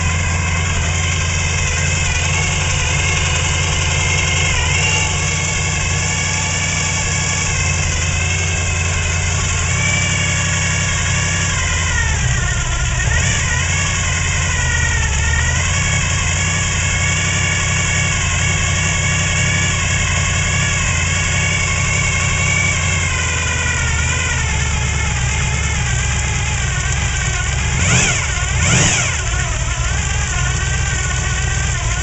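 Low-compression Gen 5 454 big-block Chevrolet V8 with a high-lift, short-duration hydraulic cam, idling on a run stand while its carburetor is adjusted; the idle speed sags and recovers partway through. Near the end the throttle is blipped twice in quick succession.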